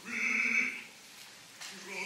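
Operatic voice crying out a short unaccompanied exclamation lasting under a second, with no orchestra underneath; another voice starts near the end.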